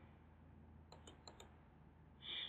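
Near silence with a faint low hum, broken about a second in by four quick, faint clicks of a computer mouse.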